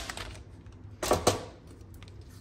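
Two quick clicks close together about a second in, from the plastic paper trimmer being handled as the cut paper flag is taken off it.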